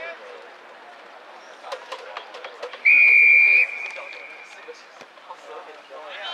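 A referee's whistle gives one sharp, steady blast of under a second, about three seconds in, signalling the restart of play in a rugby sevens match. Scattered voices from players and spectators can be heard around it.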